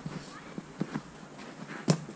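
Scattered light knocks of players' feet and the football on an artificial turf pitch, then one sharp, loud ball strike near the end.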